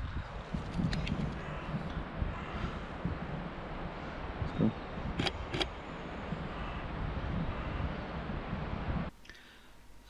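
Breezy wind buffeting the microphone with a steady rustling haze, and two sharp clicks half a second apart about five seconds in. The sound cuts off about a second before the end.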